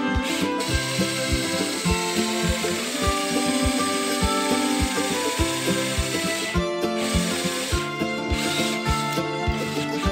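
Background music with a steady beat, over which a cordless drill with a flat wood bit is boring into a slice of cork oak, whirring for several seconds and stopping about two-thirds of the way in, with a brief further burst.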